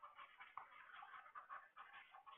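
Faint, irregular scratching of a stylus on a pen tablet during handwriting, with a light tap about half a second in.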